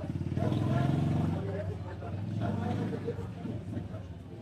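A motor vehicle's engine running close by, loudest about a second in and fading away as it passes, with people talking in the street around it.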